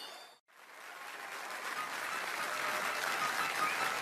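Studio audience and judges applauding. The applause starts after a brief dropout about half a second in and swells steadily.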